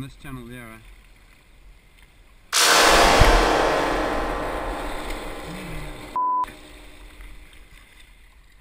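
A sudden loud crash of splashing water about two and a half seconds in, with a thud, then a rush of churning water fading over a few seconds: a hippo surging up out of the river right beside the kayak. A short censor bleep follows.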